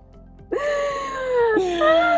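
A high, drawn-out wailing tone in two long notes. The first starts abruptly about half a second in and glides slowly down; the second starts near the end and rises.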